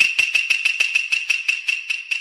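A ringing metallic object struck in a quick run, about five strikes a second, speeding up slightly and fading, over a high steady ring.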